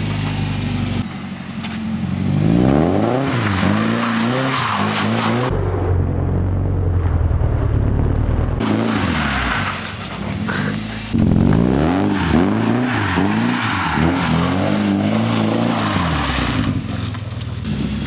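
Nissan 240SX (S13) engine revving up and down again and again as the car slides around a wet driveway. Each rev rises and falls within about a second, with a steadier, lower-pitched stretch in the middle.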